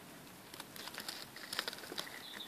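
Faint, scattered small clicks and rustles: cucumber leaves and the camera being handled close to the microphone.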